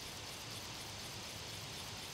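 Faint, steady background hiss with no distinct sounds.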